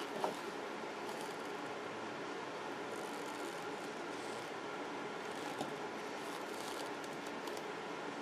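Steady background noise with a faint hum, broken by a light click about a third of a second in and another a little past halfway.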